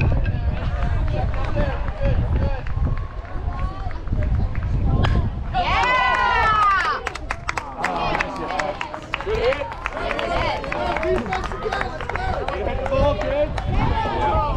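Baseball spectators talking and calling out, with one loud drawn-out shout about halfway through. A low wind rumble sits on the microphone throughout.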